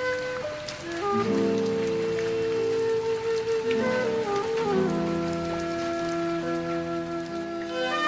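Chinese bamboo flute playing a slow melody of long held notes that step from one pitch to the next, over a softer lower accompaniment.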